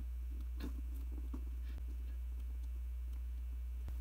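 Steady low hum with a few faint clicks, at irregular moments, from the push-buttons of an FNIRSI FNB48 USB meter being pressed.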